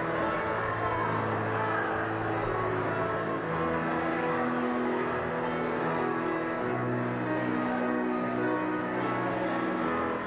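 Live worship band playing slow instrumental music, long held chords that change every few seconds.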